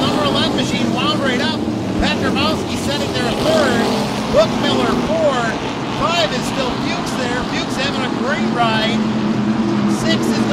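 A field of SST modified race cars running at racing speed, their engines in a dense drone with many overlapping rises and falls in pitch as cars pass and go through the turns. There is one brief louder peak a little over four seconds in.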